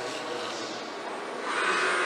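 Steady mechanical running noise of an automated robot workcell with conveyor, with a louder rushing, hiss-like swell about one and a half seconds in.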